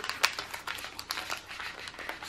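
Crinkling and small crackles of a foil plastic pouch handled by fingers picking at its sealed top edge, struggling to open it.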